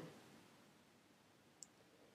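Near silence: room tone, with one faint, short click about three quarters of the way through.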